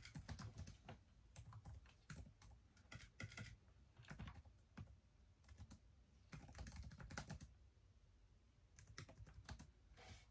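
Faint typing on a laptop keyboard: quick runs of key clicks broken by short pauses.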